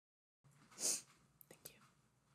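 A faint, short breathy mouth sound from a person about a second in, followed by a few faint clicks.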